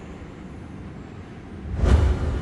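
Cinematic trailer sound effect: a low rumble that swells near the end into a quick whoosh and a deep boom.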